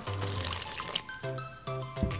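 Thin stream of water pouring onto instant snow powder in a plastic tub, strongest in the first second, as the powder soaks it up. Background music plays under it, with clearer notes in the second half.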